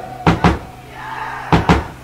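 Drum kit in a slow, sparse passage of a live heavy rock song: two pairs of heavy drum hits about a second apart, with guitar and bass ringing out and fading between them.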